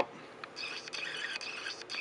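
Faint handling noise of a small fixed-blade knife being turned in the hand: soft rustle with a few light clicks.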